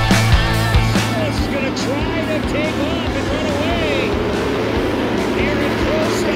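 Rock music with drum hits, dropping away about a second in. Then race engines of side-by-side UTVs rise and fall in pitch as they rev through the track.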